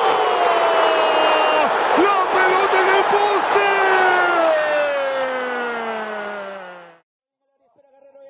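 A football commentator's long drawn-out shout, falling slowly in pitch, over stadium crowd noise, as a left-footed shot is struck. It cuts off suddenly about seven seconds in.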